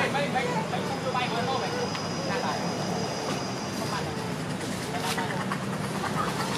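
Indistinct voices in the distance over a steady low background rumble, with a faint thin high tone for a few seconds in the first half.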